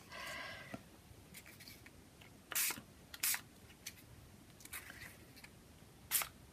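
Two short squirts from a small 30 ml pump spray bottle of homemade food-colouring ink, about two and a half and three and a quarter seconds in, with faint handling ticks and rustles of paper and stencil around them.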